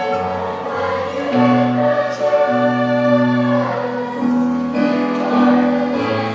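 A group of young teenage voices singing together as a choir, holding long sustained notes that change pitch every second or so.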